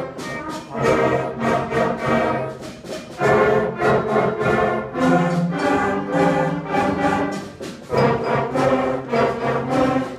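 Sixth-grade concert band of brass and woodwinds, French horns, flutes, clarinets and tuba among them, playing a straightforward blues tune with a rock feel in short, accented chords.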